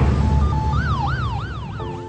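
City street traffic with a steady low rumble, a couple of short horn beeps, then an emergency-vehicle siren yelping up and down about three times in quick succession.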